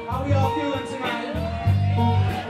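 Live rock band playing: electric guitar lines with bent notes over bass and a steady drum beat, recorded from the audience in a club.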